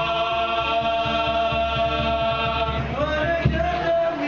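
A group of men chanting a selawat together, led by one amplified voice on a microphone. They hold long drawn-out notes, then slide in pitch about three seconds in.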